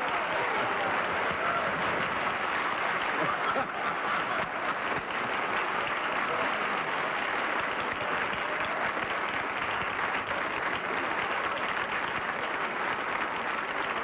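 Studio audience applauding steadily, with voices talking underneath.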